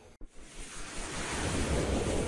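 Whoosh sound effect of an animated logo intro: a rushing noise that swells in from about half a second in and then holds steady.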